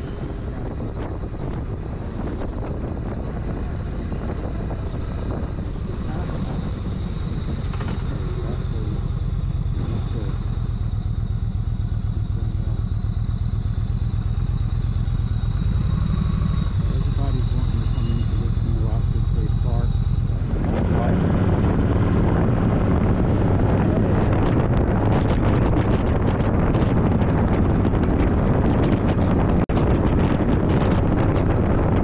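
Yamaha V-Star 1300's V-twin engine running steadily at road speed, heard from the rider's seat. About two-thirds of the way through, a loud rush of wind noise on the microphone comes in and stays.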